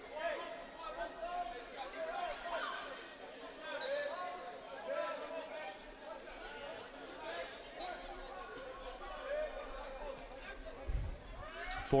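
Indoor basketball gym during a free throw: scattered voices from the crowd and benches echo in the hall, with a basketball thudding on the hardwood floor near the end.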